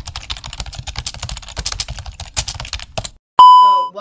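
Typing sound effect: rapid key clicks for about three seconds, then a loud bell-like ding about three and a half seconds in that fades away.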